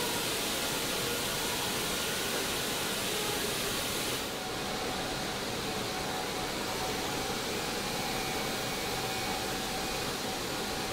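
Steady rushing hiss of air in a robotic paint booth, from the booth's airflow and the robots' spray guns applying clear coat, with a faint steady whine under it. The top of the hiss drops a little about four seconds in.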